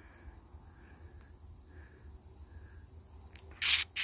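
Crickets trilling in a steady, high, even drone. Near the end, a quick run of three or four short, loud rustling crunches begins.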